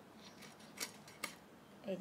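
A few short, crisp snips as a small hilsa fish is cut into pieces, the two clearest about half a second apart.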